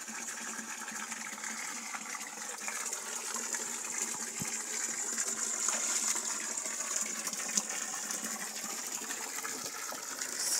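Water running steadily into a stone fish pond as it is refilled, a continuous splashing gush.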